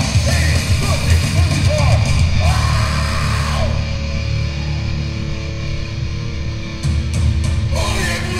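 Hardcore punk band playing live: distorted guitar, bass and drums with shouted vocals. The vocals drop out for a few seconds midway while the band keeps playing, then the cymbals crash back in and the shouting resumes near the end.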